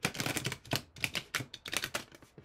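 A deck of Starseed Oracle cards being shuffled by hand: a quick, dense run of card clicks and slaps.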